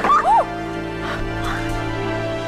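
A woman's short cry of pain right at the start, her voice sliding up and down, then dramatic music with long held chords.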